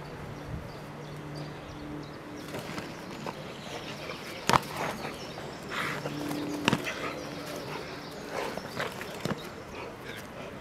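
Quiet open-air ambience with a faint steady hum and a few sharp clicks or knocks, the strongest about halfway through and again about two-thirds through.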